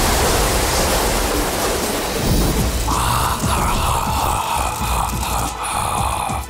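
A produced sound effect: a loud, even rushing noise over a low rumble, like a storm, starting abruptly. About halfway through, a higher droning whoosh joins it.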